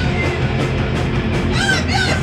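Noise punk band playing loud, with distorted guitar, bass and drums, and a woman's shrill yelled vocal coming in about one and a half seconds in.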